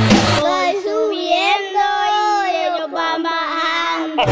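Reggaeton mix breaking down: the drums and bass drop out about half a second in, leaving a high-pitched voice singing alone with no beat under it.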